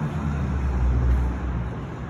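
Road traffic: car engines and tyres on a damp street, heard as a steady low rumble.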